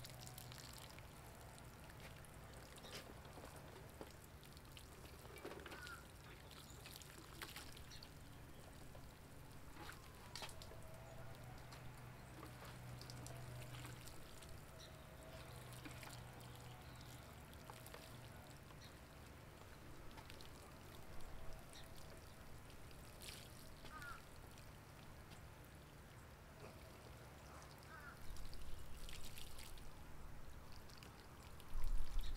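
Water sprinkling from a plastic watering can's rose onto loose potting soil, a faint steady patter.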